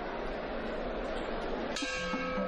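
Steady arena crowd noise, then near the end a sudden ringing bell strike that opens the first round of a Muay Thai bout.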